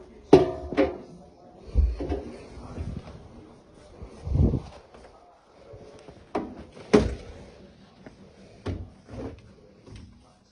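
Irregular knocks and thumps from handling a front-loading laundry machine's door and the clothes in it, about nine in all. The sharpest come just after the start and about seven seconds in.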